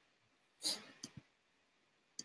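A short breathy hiss, like a quick intake of breath, about two-thirds of a second in, then two faint clicks a moment later, against a quiet room.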